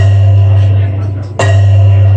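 Loud music played over a sound system: a deep, steady bass note under ringing, bell-like chords, struck anew twice about a second and a half apart.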